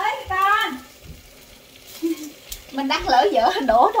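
People's voices in a room: a short high-pitched utterance at the start, a lull, then lively overlapping talk or exclamations near the end.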